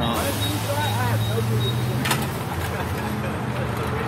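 Tire-shop working noise: a steady low machine hum, indistinct voices in the background, and a single sharp clank about two seconds in.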